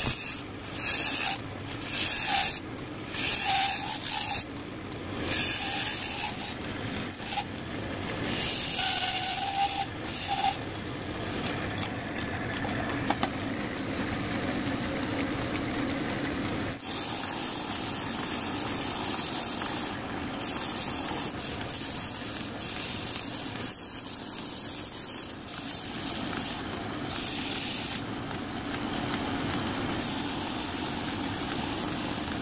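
Hand-held turning chisel cutting into a spinning mango-wood blank on a wood lathe, in loud scraping strokes about once a second. Later it gives way to a steady hiss of sandpaper held against the spinning wood.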